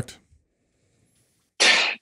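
Near silence, then about a second and a half in a short, breathy noise lasting under half a second: a person drawing breath.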